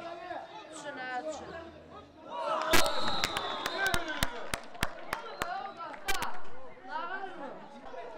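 Young football players and onlookers shouting and calling to each other on the pitch, with a run of sharp clicks and knocks starting about three seconds in, the loudest right at its start.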